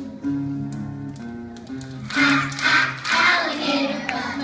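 A group of young children singing together over instrumental accompaniment, the voices loudest in the second half.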